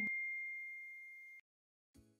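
A single high, pure electronic tone, the tail of a closing chime, fading steadily and cutting off suddenly about one and a half seconds in.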